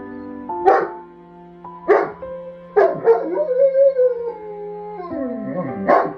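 A big dog crying at being left behind when its companion is taken away: three short yelps about a second apart, then a long wavering howl and a falling whine near the end. Background music with steady chords runs underneath.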